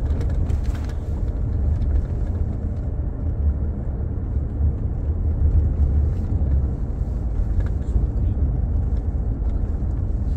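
Steady low rumble of a car on the move, heard from inside the cabin: road and engine noise at an even level.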